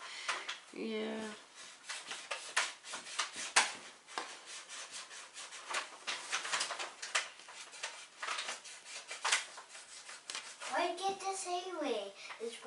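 Irregular light clicks and rubbing from hands sewing beads onto a crocheted hat at a table. A child's voice comes in briefly about a second in and again near the end.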